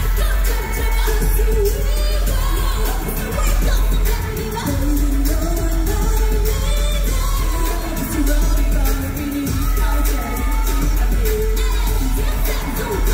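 A K-pop girl group's song played live through the concert PA: female voices singing a melody over a pop backing track with a heavy bass and drum beat.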